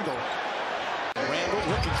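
Basketball dribbled on a hardwood court over the steady murmur of an arena crowd; the sound drops out for an instant about a second in.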